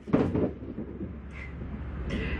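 A few short rustles and knocks of plastic packaging being handled in the first half second, then a low, steady outdoor background noise.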